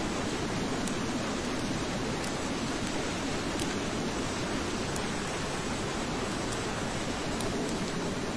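Military transport helicopter running on the ground close by, its turbine engines and turning rotor making a steady, even roar with rotor-wash wind.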